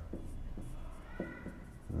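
Felt-tip marker writing on a whiteboard: a few short scratchy strokes as words are written out by hand.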